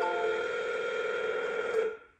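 Telephone ringback tone heard over the phone line: one steady ring about two seconds long that cuts off sharply, meaning the called number is ringing and not yet answered.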